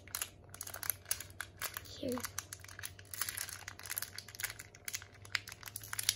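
Clear plastic bag of water-bead gems crinkling in quick, irregular crackles as it is handled and opened.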